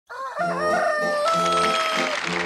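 A rooster crowing once: a short rising opening and then a long held final note. Music with a repeating low figure starts underneath about half a second in.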